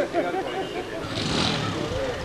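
Men's voices chatting, then from about a second in a passing motorcycle's engine adds a low rumble under the talk.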